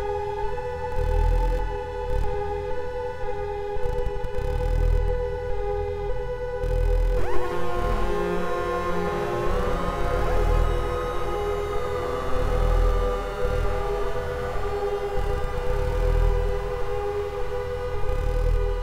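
SOMA Lyra-8 organismic analog synthesizer sounding a dark, sustained drone of several held tones over a slow, pulsing low throb. About seven seconds in, further tones slide in and bend in pitch before settling into the drone.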